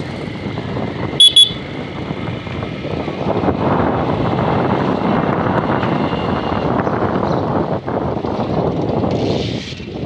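Motorcycle riding along a street: steady engine and wind noise that grows a little louder after a few seconds. Two short, loud horn beeps come just over a second in.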